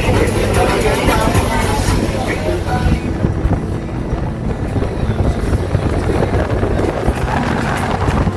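A boat under way: a steady engine hum with wind buffeting the microphone and water rushing past the hull.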